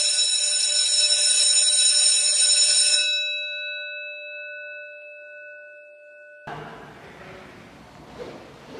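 Electric school bell ringing loudly for about three seconds, then stopping, its tones ringing on and fading away. Faint room noise starts near the end.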